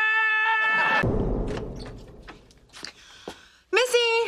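A man screaming in terror on one high held pitch, cut off about a second in. A few faint clicks follow, then a second short, shrill cry starts near the end.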